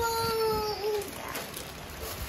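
A child's voice holding one long, level note that trails off about a second in, followed by soft handling noise of a paper bag.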